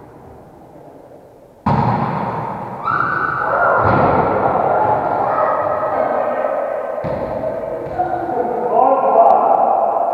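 A volleyball being struck, with sharp thuds about two seconds in and again around seven seconds, each ringing on in the echoing hall. From about three seconds on, a steady bed of held tones runs underneath.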